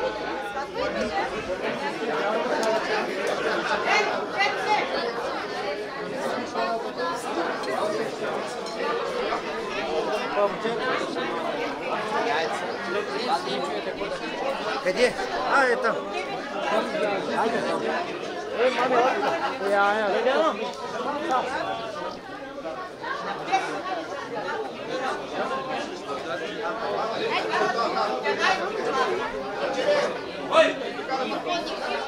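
Chatter of a crowd of guests: many voices talking over one another at once, with no single speaker standing out.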